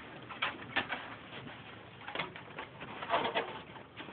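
A dog's paws crunching through deep snow, several short uneven steps with a small cluster about three seconds in.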